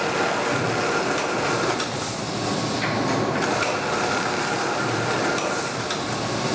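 Steady mechanical din of a flour mill's bagging line, with the sack conveyor and the bag-closing sewing machine running and a few faint knocks.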